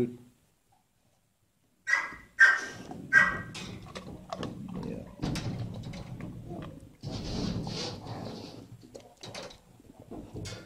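Shelter dogs barking: after a brief silence, three short barks about two seconds in, then a dog sniffing and snuffling close to the microphone.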